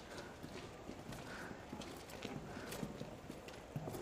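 Faint, irregular clip-clop of horse hooves.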